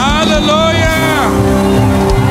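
Live gospel praise music: a singer's loud vocal cry swoops up into a held note and falls away after about a second, over the band's steady sustained chords.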